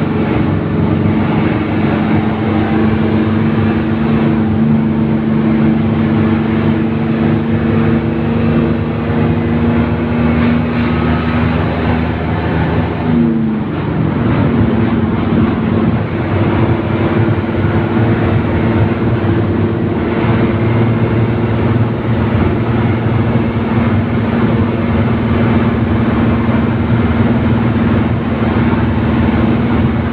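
Isuzu MT111QB city bus heard from inside the passenger cabin as it drives at speed: the engine runs steadily under road and wind noise. About halfway through, the engine note dips briefly and then picks up again.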